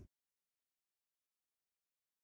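Dead silence with no audio at all, after the preceding sound cuts off abruptly right at the start.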